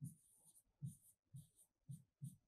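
Marker pen writing on a whiteboard, faint: a few short squeaky strokes about half a second apart, each with a soft tap.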